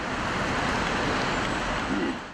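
Steady street traffic noise, an even rush with no distinct events.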